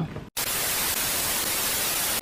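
Television-static sound effect: a steady, even hiss of white noise that cuts in suddenly after a brief gap, under a glitch transition.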